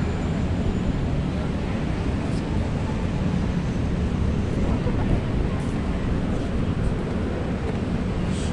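Steady low rumble of wind buffeting a phone's microphone outdoors, with a few faint ticks.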